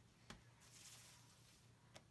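Near silence: a faint rustle of a hand smoothing the plastic carrier sheet of iron-on vinyl onto a t-shirt, with a soft tick shortly after the start.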